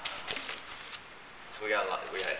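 Vinyl LP records being flipped through by hand in a crate: quick clacks and rustles of the record jackets knocking against each other. A man starts talking near the end.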